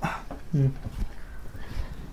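A person's short vocal sound, falling in pitch, about half a second in, against quiet room noise.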